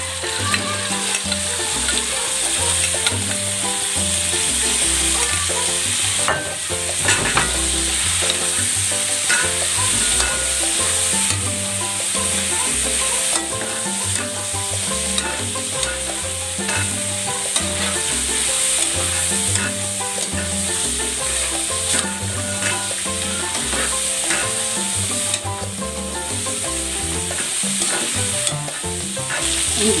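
Cubes of pork sizzling in hot oil in a steel wok with sautéed garlic and onion, stirred and turned with a spatula, with short scrapes against the pan. It is the sauté stage of an adobo, before the marinade goes in.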